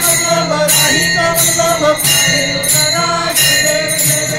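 Hindu devotional aarti song sung to a steady beat of jingling metal percussion, about three strokes every two seconds, with a steady high ringing over it.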